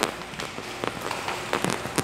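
Footsteps on a hard polished floor: a few sharp taps of shoes as people walk.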